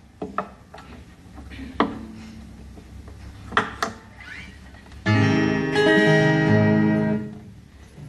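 Acoustic guitar: a few soft knocks and single plucked notes, then about five seconds in a loud strummed chord that rings and shifts to another chord before dying away after about two seconds.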